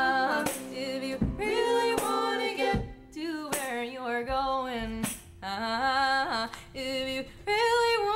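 A woman sings a run of short phrases with sliding, wavering notes and brief breaks between them, over sparse acoustic accompaniment from harmonium and cello. The low backing thins out after about three seconds, leaving the voice nearly alone.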